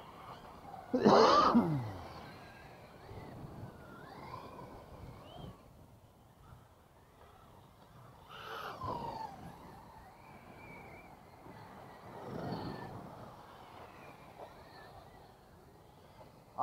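A man coughs loudly about a second in. After it, a brushless electric RC car runs on the dirt track, its motor whine and tyre noise swelling as it passes close about eight and a half seconds in and again near twelve and a half seconds.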